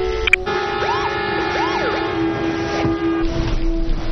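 A siren sweeping up and down twice, each sweep under a second, over several steady held horn-like tones.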